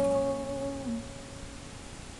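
Acoustic guitar's final strummed chord ringing out and fading away, mostly died down about a second in.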